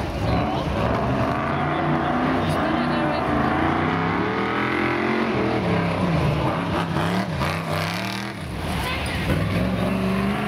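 BriSCA F1 stock car's V8 engine running round the oval, its revs rising and falling repeatedly, with a brief drop just past eight seconds in.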